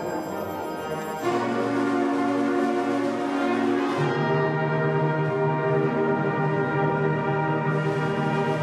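School concert band playing sustained brass and woodwind chords. The full band comes in louder about a second in, and a low bass note joins around four seconds in.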